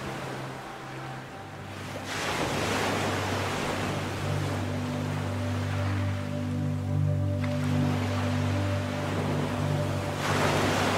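Slow ambient music of held low chords over the sound of ocean surf. A wave swells up about two seconds in and falls away about seven seconds in.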